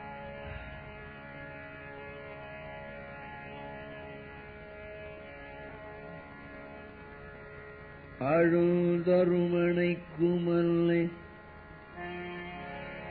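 A steady, sustained musical drone, then about eight seconds in a man's voice comes in loud with an upward slide and holds long sung notes in devotional Indian style, with a brief break between two phrases.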